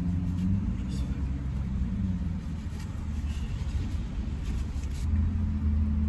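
Low, steady rumble of an idling vehicle engine heard inside a car cabin, swelling louder about five seconds in.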